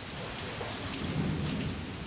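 Steady rain falling, an even hiss, with a low rumble that swells about a second in.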